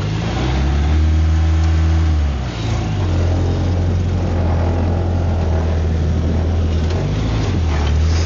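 Suzuki Samurai 4x4's engine running while driving, a steady low engine note that drops and changes pitch about two and a half seconds in and again about seven seconds in, with a steady hiss over it.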